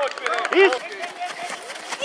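High-pitched voices shouting over one another, with one loud call of a name about half a second in. Short knocks are scattered throughout.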